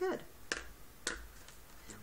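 Two sharp clicks about half a second apart as felt-tip markers are handled, typical of a marker cap being snapped on and pulled off.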